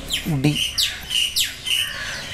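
A bird chirping in a quick series of short, high, downward-sliding chirps, about three a second. A man's voice says one short syllable near the start.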